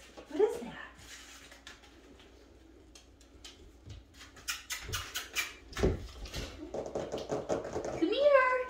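Goldendoodle puppy scampering and pouncing with a crumpled paper ball on a laminate floor, making a quick run of clicks and scuffles through the second half, from claws on the hard floor and the paper being handled.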